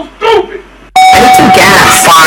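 A steady electronic tone, about a second long, starts suddenly about a second in over loud voices and noise.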